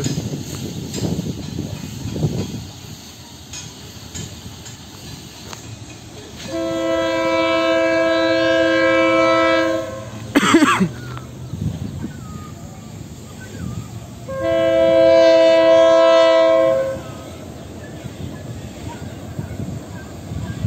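Multi-chime air horn of a KCSM EMD GP-series diesel locomotive sounding two long blasts about eight seconds apart, each a steady chord of several notes, over the low rumble of the train. A brief sharp sound comes between the two blasts.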